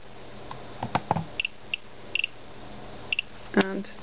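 Gamma Scout Geiger counter's clicker ticking: about half a dozen short, high-pitched clicks at irregular intervals, each one a radiation count registered by the Geiger–Müller tube.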